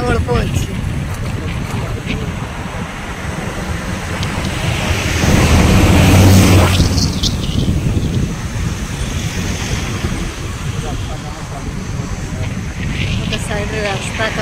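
Road noise from a moving vehicle with wind buffeting the microphone, and a louder low rumble swelling and fading about five to seven seconds in.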